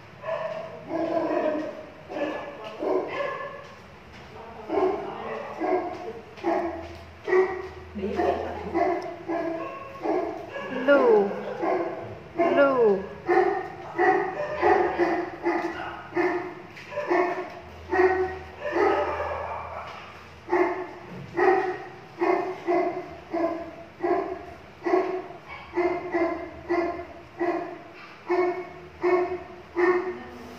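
A dog barking over and over in short, even calls, about one and a half a second through the second half, with a couple of falling whines about eleven and twelve seconds in.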